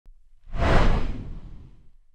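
Whoosh sound effect with a deep low boom for an intro logo reveal. It swells up about half a second in and fades away over the next second.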